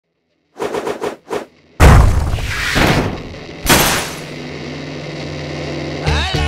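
Designed sound effects for an animated title: four quick stuttering bursts, then a heavy boom with a long fading tail, a second hit with a hissing whoosh, and a steady low hum that holds until the end.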